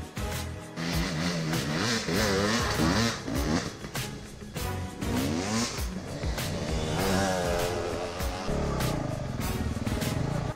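Dirt bike engine revving up and down several times while being ridden, heard under a music track.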